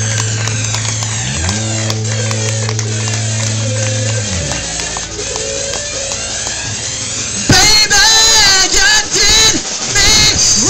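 Live rock band playing with electric guitar, bass, keyboard and drums, a long held bass note stepping up in pitch and back early on. About seven and a half seconds in, a loud, high lead line with bending pitches comes in over the band at the vocal microphone.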